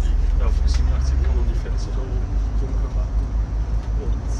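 Interior noise of a MAN ND 313 double-decker city bus driving, heard from the upper deck: a loud low engine and road rumble that turns into an uneven throb about a second and a half in, with passengers talking indistinctly in the background.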